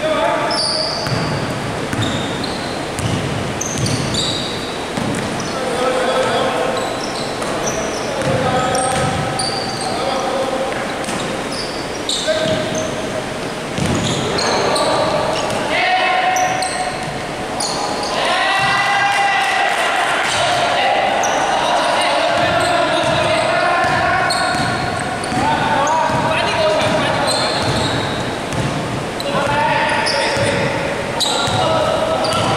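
A basketball being dribbled on a wooden gym floor, its bounces echoing in a large sports hall, with players' voices calling out during play.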